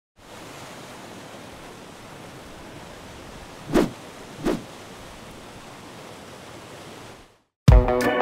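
Intro sound effect: a steady, even hiss with two short thuds a little before and after the middle, cut off just before the end. A loud guitar music track then starts near the end.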